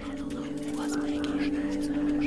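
Breathy whispered voices over a sustained, steady drone of held musical tones, as in ambient meditation music.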